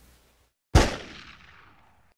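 A moment of dead silence, then about three-quarters of a second in a single loud hit sound effect that rings out and fades over about a second: the transition sting opening the show's bumper.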